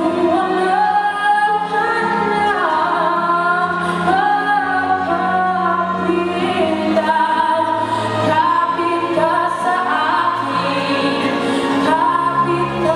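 A young male singer sings a slow, melodic line with long held and gliding notes into a handheld microphone. Sustained instrumental accompaniment runs underneath.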